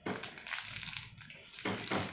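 Plastic chocolate wrapper crinkling and rustling unevenly as it is bitten and pulled open with the mouth, no hands used.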